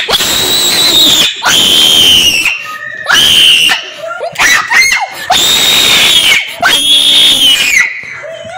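Shrill, high-pitched screaming in fright, a string of about six long screams of roughly a second each with brief breaks between them.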